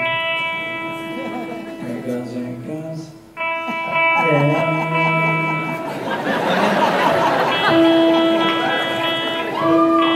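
Live band music in a large hall: held electric guitar and keyboard chords that drop out briefly a little after three seconds in and then return, with a voice over them.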